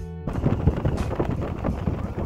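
A guitar music track cuts off just after the start. It gives way to loud, gusty wind buffeting the phone's microphone, with road noise from a car moving at speed.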